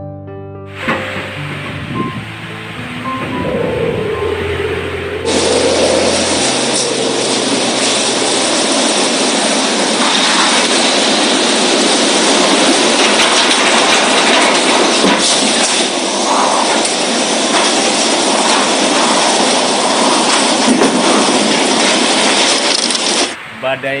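Loud, steady roar of tropical cyclone wind with driving rain, starting abruptly about five seconds in and cutting off near the end. Before it, piano music plays over a rising wind noise.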